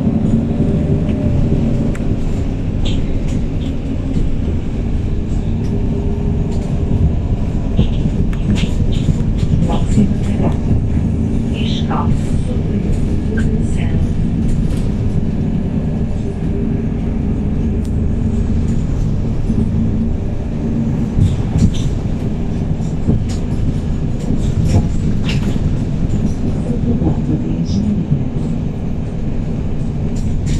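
Interior sound of a 2019 MAN 18.310 city bus with its MAN E2866 straight-six CNG engine and Voith automatic gearbox, running with a steady low drone. Short rattles and clicks from the bodywork come and go throughout.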